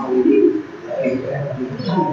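A dove cooing, in two low calls.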